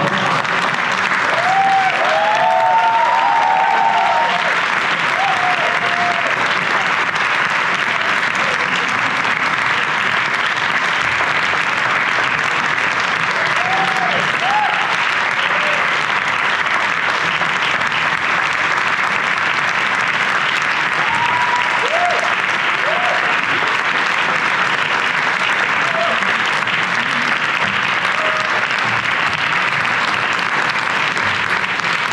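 Theatre audience applauding steadily, with a few voices cheering over the clapping, most of them in the first few seconds.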